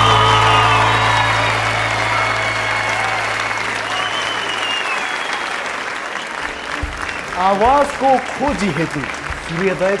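Studio audience applauding while the band's final held chord fades out over about five seconds. A man's voice comes in over the clapping near the end.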